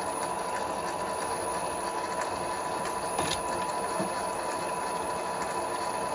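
Sealey SM27 bench lathe running steadily in forward on its slow belt speed: the electric motor, belt drive and change-gear train turning the leadscrew together, with a steady whine under an even mechanical whirr.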